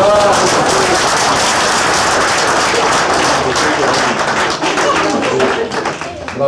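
Applause from a small crowd of people clapping their hands, starting suddenly and running on as a dense patter of claps, with a few voices heard through it.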